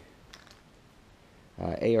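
A few faint light clicks of small steel cam bolts being picked up and handled, about a third of a second in, over quiet room tone; a man's short 'uh' near the end.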